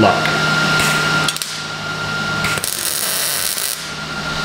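MIG welder laying a tack weld on an exhaust pipe joint: a short spit about a second in, then a crackling buzz for a little over a second starting about two and a half seconds in.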